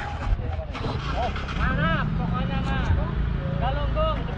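Small motorcycle engine running as a motor scooter comes up the road, a steady low rumble that sets in about a second and a half in, with people's voices over it.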